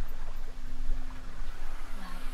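Water rushing and splashing along the hull of a sailing yacht under sail, with wind rumbling on the microphone and a faint steady hum.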